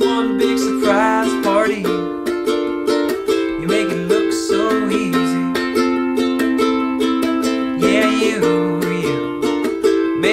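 Koaloha Opio concert long-neck ukulele strummed in a steady rhythm, with a man's wordless voice gliding up and down over it a few times.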